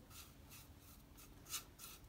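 Faint strokes of a paintbrush working coffee stain over the inside of an oak bowl, soft bristles brushing on the wood, with one slightly louder stroke about one and a half seconds in.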